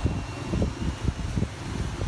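Electric fan blowing across the microphone: an uneven, fluttering low rumble of wind noise.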